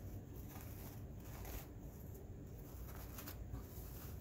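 Faint rustling of ribbon being handled as the bow's loops are fluffed and pressed into place, a few soft crinkles over a low steady room hum.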